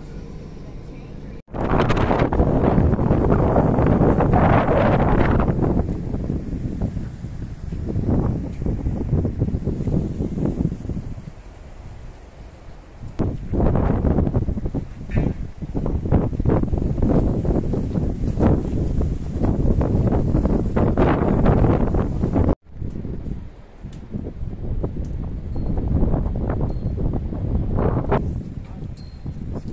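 Wind buffeting the microphone outdoors: loud, low rumbling noise that swells and falls in gusts, with indistinct voices under it. It is preceded by a short stretch of steady bus-cabin hum and broken by an abrupt cut near the end.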